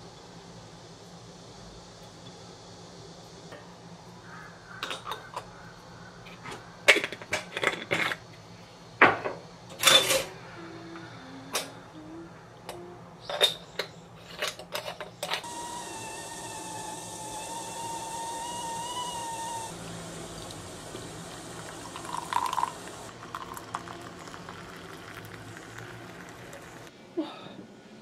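Aluminium moka pot being handled and assembled: a run of metal clinks, taps and knocks as coffee is spooned in and the parts are fitted. Then water runs steadily for about four seconds.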